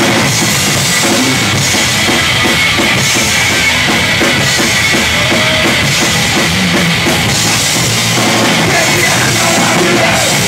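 Hardcore punk band playing live at full volume, the fast drumming driving the song.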